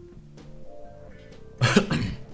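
Quiet background music with held notes, then a man's single loud cough about one and a half seconds in.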